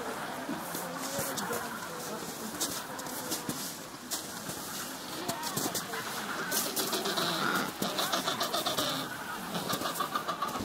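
Adélie penguins calling in a steady background din of short squawks, with scattered faint clicks over it.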